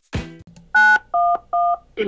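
Touch-tone phone keypad dialing 9-1-1: three short dual-tone beeps, the first a little higher and the last two alike, starting about midway. Just before them, the last guitar note of the music fades out.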